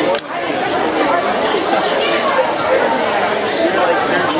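Spectators chattering: many overlapping voices with no clear words, with a momentary drop in level just after the start.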